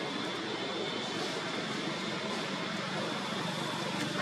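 Steady outdoor background noise: an even hiss and drone at a constant level, with a faint steady high-pitched tone running through it.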